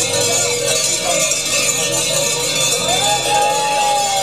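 Many metal livestock bells jangling continuously.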